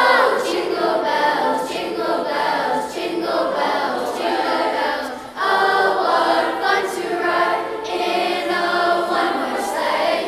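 Youth choir singing a medley of Christmas carols, with a brief break between phrases about five seconds in.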